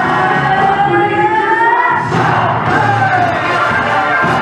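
Loud dance music for a flash mob, with a melody line gliding upward over the first two seconds, then an abrupt change in the track about halfway through.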